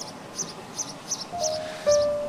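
Background drama score: a soft, high-pitched tick about four times a second, joined in the second half by held notes that step down in pitch.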